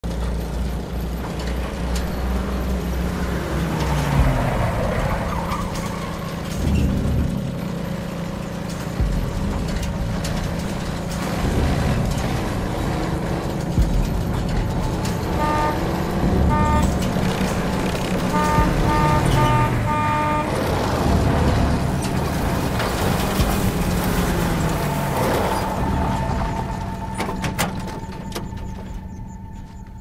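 Motor vehicle engines running, with a low steady hum and slow falling pitch glides. Around the middle a vehicle horn gives a series of short toots in two bursts. The sound fades down near the end.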